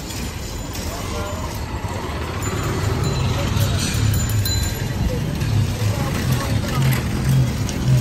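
Busy city street at night: motor traffic and voices, with music carrying a low pulsing beat that grows stronger about three seconds in.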